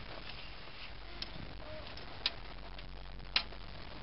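Three sharp clicks about a second apart over a steady outdoor background hiss, the last click the loudest.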